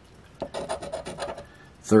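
Edge of a heavy copper coin scraping the latex coating off a scratch-off lottery ticket: a quick run of short rasping strokes, several a second, starting about half a second in.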